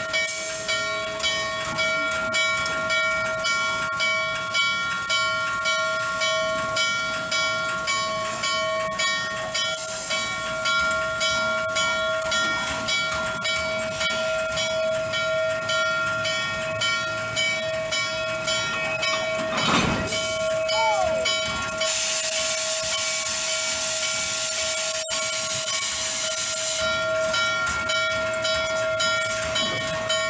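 Norfolk & Western 611, a Class J 4-8-4 steam locomotive, standing with its air pumps beating in a steady rhythm over a constant whine and hiss. A little past two-thirds of the way in there is a knock, then a loud rush of escaping steam for about five seconds before the steady pumping carries on.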